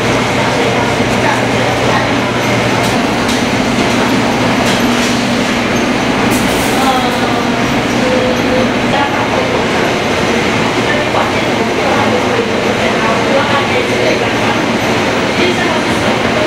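Food-factory production line running: conveyor belts and machinery give a steady rumble and clatter over a constant low hum.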